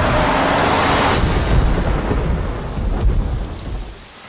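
Heavy rain with a long roll of thunder, loudest in the first second and dying away toward the end.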